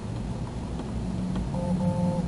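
Low steady rumble of vehicle noise heard inside a parked car's cabin, with a short two-note electronic beep sounding twice in quick succession near the end.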